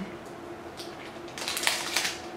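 Plastic snack-bar wrapper crinkling in the hand: a faint crackle near the middle, then a quick run of crackles in the last half second.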